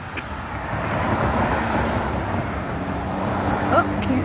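A road vehicle passing: a rush of traffic noise that builds over the first second, with a low engine hum joining in the second half.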